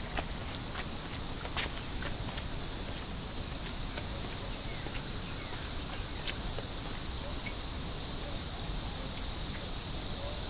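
A steady, high-pitched chorus of insects such as crickets. A few footsteps on the path in the first two seconds, fading as the walker moves away.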